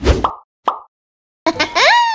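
Cartoon sound effects: two short pops about half a second apart, then a pitched sound that sweeps up and slides back down.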